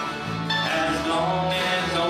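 Acoustic country band playing live: acoustic guitars, mandolin, bowed fiddle and electric bass, with singing over the instruments.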